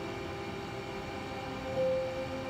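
Held notes of a drama's background score playing through a television speaker over a low hiss. One note steps up in pitch near the end.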